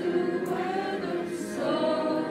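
A school choir singing held notes together over a recorded karaoke backing track.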